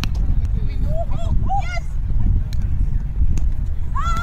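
A roundnet rally: a few sharp slaps as players hit the small ball, mixed with short shouted calls, over a steady low rumble of wind on the microphone.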